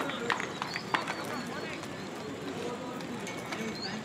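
Faint, indistinct voices of cricketers calling across an open field, with a few sharp clicks in the first second or so.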